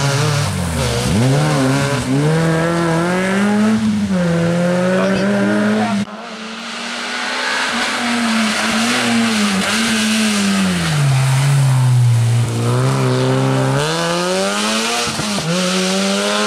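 Small rally car engines revving hard on a special stage, the pitch repeatedly climbing and dropping as the drivers accelerate, lift and change gear. First a Peugeot 106 through a hairpin, then, after a sudden cut about six seconds in, a second car accelerating up the road toward the listener.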